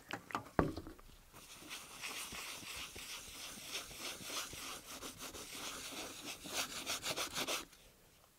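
Paper towel wetted with denatured alcohol scrubbed rapidly back and forth over a Poundo cutting board, a steady rubbing that starts about a second in and stops shortly before the end. The scrubbing is lifting black residue off the board's surface. A few light knocks come just before the rubbing starts.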